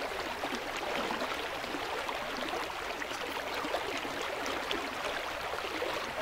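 Steady flow of water in a stream, a continuous even rush with faint irregular trickling.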